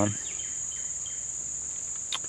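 Steady high-pitched drone of insects, one unbroken tone that holds level throughout.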